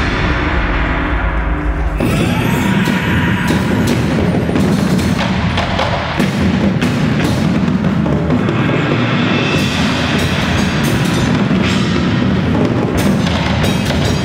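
Indoor percussion ensemble playing drums and mallet keyboards (marimbas, vibraphones). Sustained low tones hold for the first two seconds, then give way abruptly to a dense passage of drum strikes.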